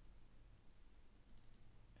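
Faint computer mouse clicks, a quick cluster of a few about a second and a half in, as folders are opened with a double-click, over a low steady room hum.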